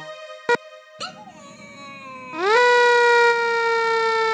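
Cartoon character Booba's scream, drawn out: it rises quickly a little over two seconds in, then holds loud and steady, sinking slowly in pitch. Before it, the remix beat cuts off, and there is a sharp click and a short squeak.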